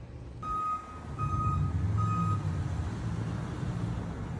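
A truck's reversing alarm beeping three times at one steady pitch, over the low running of its engine.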